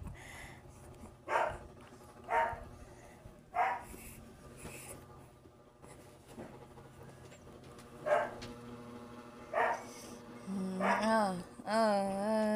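A dog barking: five short single barks spaced irregularly, one to four seconds apart. A person hums a wavering tune near the end.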